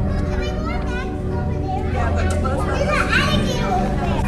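Background chatter of many children's voices in a busy public hall, over a steady low hum.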